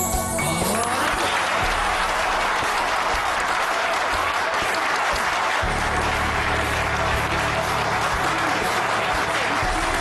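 Audience applauding steadily over background music, with a low sustained note in the music coming in about halfway through.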